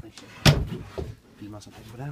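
A single loud wooden thump about half a second in as the slatted wooden bench in a boat's cockpit is handled, followed by a low voice.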